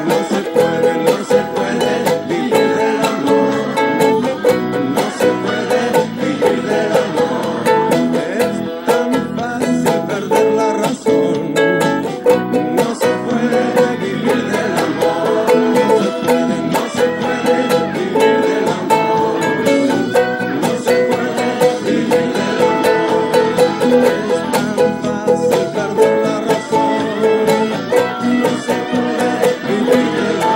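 Ukulele strummed in a steady, lively rhythm, moving through E, A and B chords, with muted percussive chucks between the down- and up-strokes.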